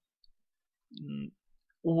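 A man's voice pausing mid-sentence over a noise-gated, near-silent track, with a faint click about a quarter second in. A short quiet hesitation hum about a second in, then speech resumes near the end.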